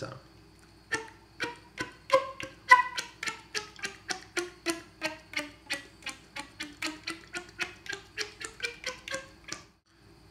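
Flute played with slap tongue, the tongue slapped against the teeth: a run of short, percussive pitched pops, about four a second, moving up and down in pitch. It starts about a second in and stops shortly before the end.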